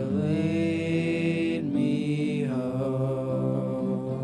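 Live worship music: male voices singing long held notes over a band with electric guitar and keyboard, with a short break for breath a little under two seconds in.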